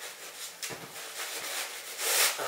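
Thin plastic bag crinkling and rustling as a sneaker is handled and slid out of it, a quick, irregular run of small crackles.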